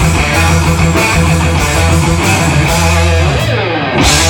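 Live progressive metal band playing loud: distorted electric guitar, bass and drums with cymbals. Near the end the cymbals drop out and a pitch slides downward, then the full band comes back in.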